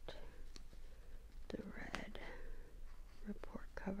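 Soft whispering with a few light clicks, as a felt-tip highlighter marker is worked over a lined paper list.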